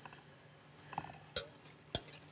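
Glass mixing bowls and a stirring utensil clinking twice as batter is poured and stirred: one sharp clink about a second and a half in, another right at the end, with near quiet before.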